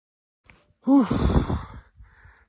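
A person's loud, breathy sigh about a second long, starting about a second in, its pitch rising and then falling away, after a faint click.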